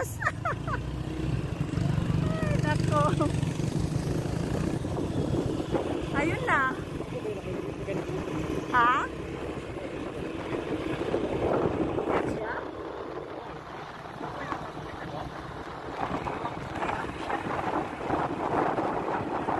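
Motorcycle engine running and tyre and wind noise heard from on board a moving bike, a steady low rumble that eases a little around the middle. Short snatches of voices and a laugh come over it.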